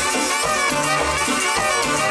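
Live Latin dance band playing: saxophones and trumpet over bass guitar, keyboards and drums, at a steady dance beat.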